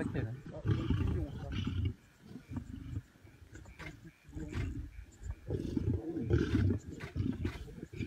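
Lions growling over a fresh kill in low, rumbling bouts with short pauses between them, a squabble at the carcass as a male lion comes in among the feeding lionesses.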